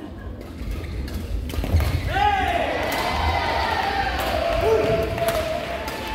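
Badminton rally in a large reverberant hall: sharp racket strikes on the shuttlecock about once a second and footwork on the court floor, with drawn-out wavering squeaky tones from about two seconds in.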